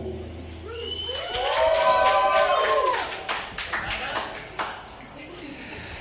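Scattered clapping from a small audience, with several voices calling out together in a drawn-out rising and falling cry about a second in.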